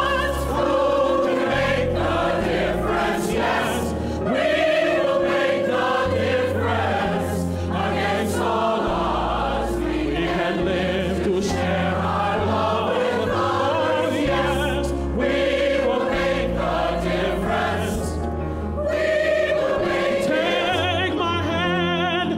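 Large mixed-voice choir singing in harmony, the sung notes wavering with vibrato over low sustained notes that change every second or two.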